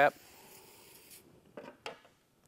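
Aerosol can of pre-painting prep solvent spraying for about a second, a steady hiss that stops abruptly, used to clean off a body-filler spreader.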